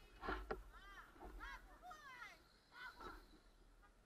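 A faint run of short bird calls, each rising then falling in pitch, after two brief knocks just under half a second in.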